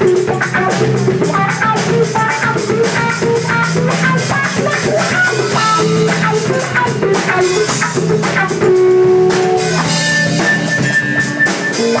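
A live funk band jam: an electric guitar plays short, choppy lines over a steady drum-kit beat with cymbals. A few longer held guitar notes come in the second half.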